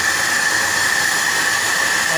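Plasma torch of an Apmekanic SP1530 Maxcut CNC plasma cutting table cutting through metal plate: a steady, loud hiss with a high whine running through it.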